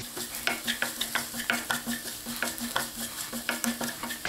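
A wooden spatula stirring chopped okra as it fries in a non-stick pan: quick, regular scraping strokes, several a second, over a light sizzle.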